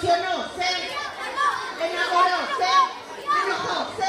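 A crowd of schoolchildren's voices, many high voices calling out and chattering over one another.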